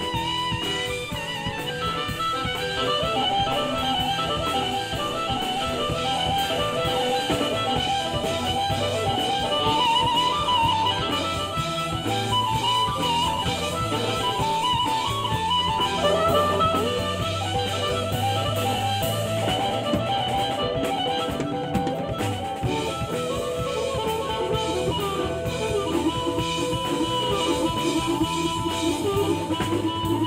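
Live blues band playing an instrumental break with no singing: electric guitar, electric bass and drum kit, with a harmonica.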